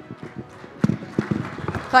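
A few irregular knocks and thumps, clustered from about a second in, over a faint hall background.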